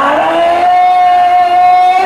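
A man's voice holding one long sung note, gliding up at the start and then steady, during a naat recitation into a microphone.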